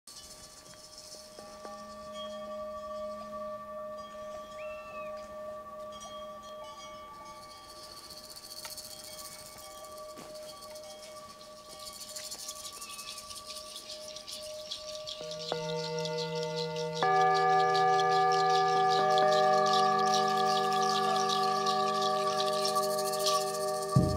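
Gongs ringing in long, steady tones. Soft tones start a second or so in, a high shimmer builds from about halfway, and new, louder ringing tones come in twice about two-thirds of the way through.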